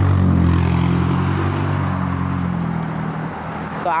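A motor vehicle's engine driving past, loud at first and then dying away over the second half.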